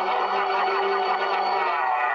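A man's long, loud yell held on one steady pitch, without a break.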